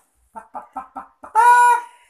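A child imitating a hen's cackle: five quick clucks, then one long drawn-out "petok" call that is the loudest part.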